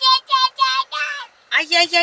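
A small child's high-pitched voice chanting "ay, ay, ay" in four short sing-song syllables. After a brief pause, a woman's lower voice answers with a quicker run of "ay, ay, ay".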